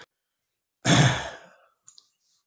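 A man sighs once, a short breathy exhale lasting under a second, followed by a faint click near the end.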